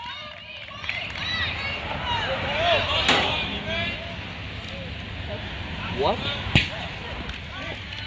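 Shouting voices of players and onlookers at a box lacrosse game, scattered and fairly distant, with two sharp knocks about three seconds and six and a half seconds in.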